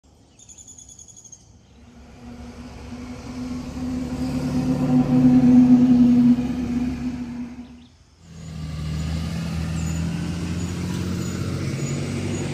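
A few short bird chirps, then a school bus engine growing louder as the bus drives past, loudest about five or six seconds in. After a sudden break near eight seconds, the bus engine runs steadily.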